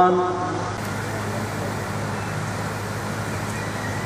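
A man's voice over a microphone trails off in the first half second. After it comes a steady background noise with a constant low hum.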